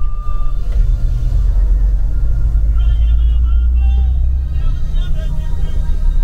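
A moving bus heard from inside its cabin: a loud, steady, deep rumble of engine and road. A voice rises over it in the second half.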